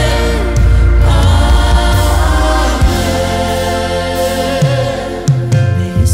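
Gospel-style worship music with singing, long held notes over a heavy deep bass.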